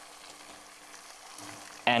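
Curry sauce of tinned tomatoes and spices sizzling steadily in an enamelled cast-iron pot on the hob.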